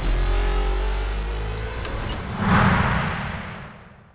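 Closing sound design of a TV news intro: a deep sustained rumble under held, slightly gliding tones, with a whoosh swelling up about two and a half seconds in, then the whole sound fading away near the end.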